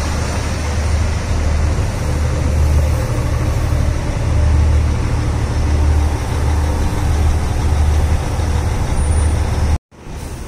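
NI Railways Class 3000 diesel multiple unit's underfloor diesel engine idling at a standstill: a loud, steady low rumble with an uneven throb. It cuts out abruptly just before the end.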